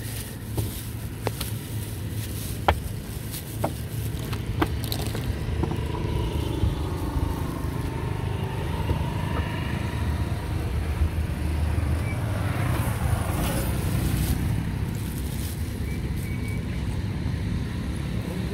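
Street ambience: a steady low rumble of traffic and wind, with a vehicle passing about two-thirds of the way through. In the first few seconds a plastic bag holding a samosa crinkles and clicks in the hand.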